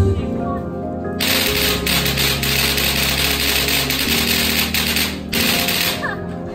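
Traditional music playing, with a loud crackling rustle of stiff dong leaves being folded and pressed around a square bánh chưng in a wooden mould, starting about a second in and stopping sharply about a second before the end.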